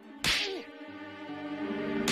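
A whip cracks once, sharp and sudden, over sustained background music: a cart driver lashing his bullocks to free a cart stuck in a pothole. A second crack comes right at the end.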